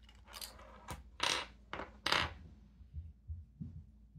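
Plastic fountain pen and its cap being handled and set down on a wooden desk: a string of light knocks and clicks, the loudest a little over a second in and about two seconds in, with a few soft thumps near the end.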